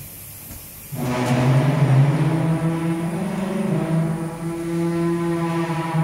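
The cosmetic cream filling machine starts a loud pitched hum abruptly about a second in. The hum runs on with small shifts in pitch.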